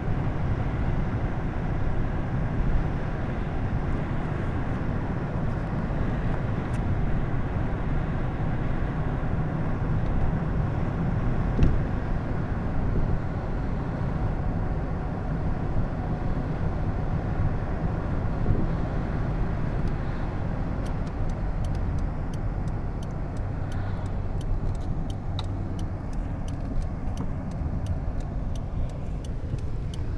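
Steady engine and tyre noise from inside a moving car, low and even, with a scatter of small clicks in the last third.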